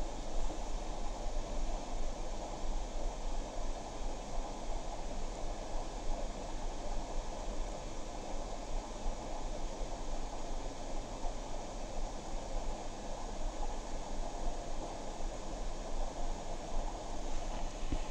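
Steady rushing background noise with a low electrical hum underneath, flickering slightly in loudness.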